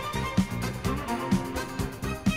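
Music played from a vinyl record on a DJ turntable: a steady drum beat, about two beats a second, under a pitched melody line.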